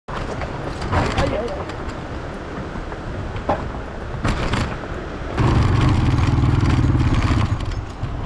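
A vehicle driving over a rough, rocky dirt track, its engine running under knocks and rattles from the uneven surface. About five and a half seconds in, the engine becomes much louder and steadier, with a low, even pulsing.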